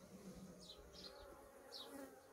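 Faint, steady hum of honeybees from an open hive, with a few short, faint high chirps over it.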